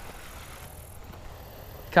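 Steady, low outdoor background noise with no distinct event in it.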